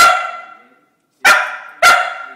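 Scottish Terrier barking three times, sharp single barks, each trailing off in a short echo. One comes at the start, then a pause of about a second, then two in quick succession. The barks are the dog counting out the answer to "3 plus 3".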